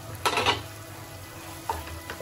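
Wooden spatula stirring chopped boiled eggs through a frying masala in a pot. A short scrape comes about a quarter second in and a smaller one near the end, over a low, steady sizzle.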